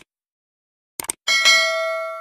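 Subscribe-button animation sound effect: a mouse click, then a quick double click about a second in, followed by a bright bell ding that rings on and fades.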